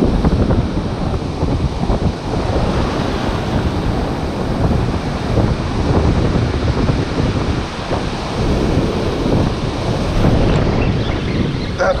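Strong wind buffeting the camera microphone in uneven gusts, a heavy low rumble, over the steady wash of breaking ocean surf.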